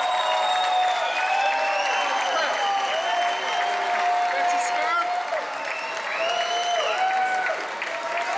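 Concert audience applauding and cheering, many voices calling out over steady clapping.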